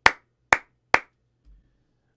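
Three sharp hand claps about half a second apart, recorded as sync markers for lining up audio with video. They are recorded hot, peaking at about zero decibels.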